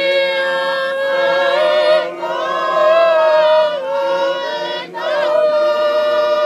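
A choir singing unaccompanied in long held notes, with brief breaks between phrases about two seconds in and again near five seconds.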